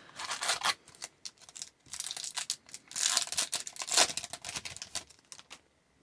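A hockey card pack taken from the box and its wrapper torn open and crinkled, heard as a run of sharp rustling bursts. The bursts are loudest about three to four seconds in and die away near the end.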